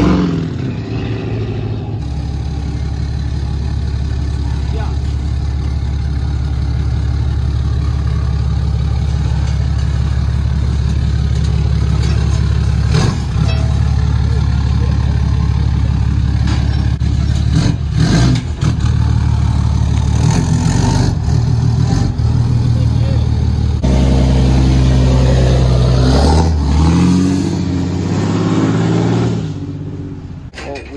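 Ram pickup truck's engine running at a steady low idle as the truck rolls slowly off a trailer, the engine note shifting a couple of times near the end; a few sharp knocks partway through.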